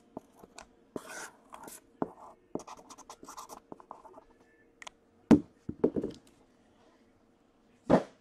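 Marker pen writing on a cardboard box: a run of short scratchy strokes. These are followed by a few knocks as the box is handled and set down, the loudest about five seconds in and another near the end.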